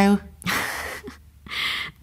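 A woman's breathy sigh, then a second short breath near the end: an embarrassed reaction just before she admits she has no car.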